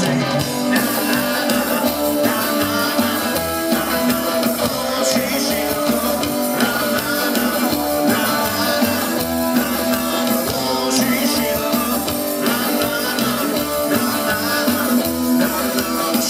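Live psychobilly band playing upright double bass, electric guitar and drums.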